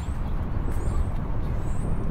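Explosion sound effect: a loud, low rumble that comes in suddenly at the start and holds steady, with a few faint high chirps above it.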